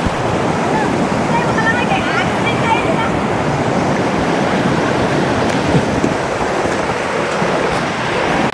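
Shallow river water rushing steadily, with children splashing as they wade and swim. Brief high children's voices come in the first few seconds.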